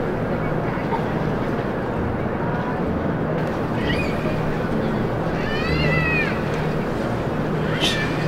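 Steady outdoor night ambience, a low hum under an even hiss, with one short high-pitched cry rising and falling about six seconds in.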